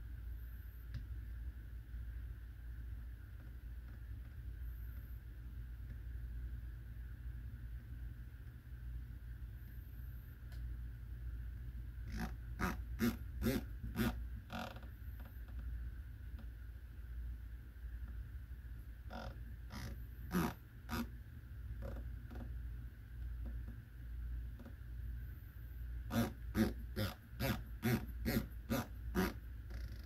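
Elevation turret of a Delta Stryker HD 4.5-30x56 rifle scope turned by hand, giving sharp detent clicks in three runs of several clicks each, the first about twelve seconds in. A steady low hum sits underneath.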